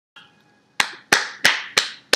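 One person clapping her hands: four sharp, evenly spaced claps at about three a second, starting just before a second in.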